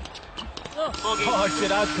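A man's voice talking over background music holding a steady note, after a few faint taps in the first second.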